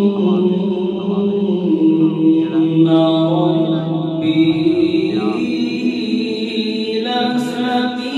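A man's solo voice reciting the Quran in a slow, melodic chanting style through a microphone, holding long drawn-out notes that slide gently in pitch.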